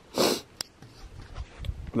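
A man sniffs once, a short quick breath in through the nose about a quarter second in. After it only a faint low rumble remains.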